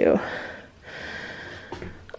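A woman's breath between words: a breath out that trails off, then a breath drawn in about a second in.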